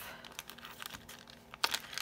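A small clear plastic bag being handled and opened: light rustling and scattered small clicks, with a sharper crackle about one and a half seconds in.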